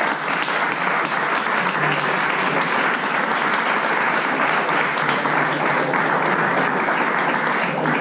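An audience clapping: steady applause made of many overlapping hand claps.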